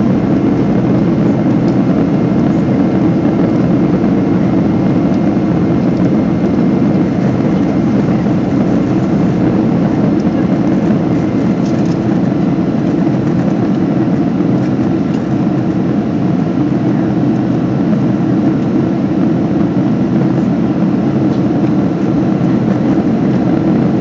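Steady cabin noise of a Boeing 767-200 in its climb after takeoff: the twin turbofan engines and rushing airflow heard from inside the cabin at a window seat, a deep even rumble with faint steady whining tones above it.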